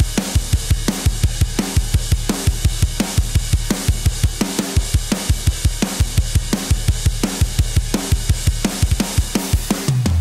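Soloed recorded drum kit playing fast, the kick drum hitting about six times a second under a steady wash of cymbals and snare. The kit's transient processor is switched off partway through and back on near the end, a subtle A/B of the other drums' ringing that the processing removes to tighten up the kit.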